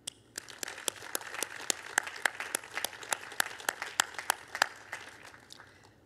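A small audience applauding after a prize is announced, with individual hand claps heard separately; the clapping starts just after the announcement and thins out near the end.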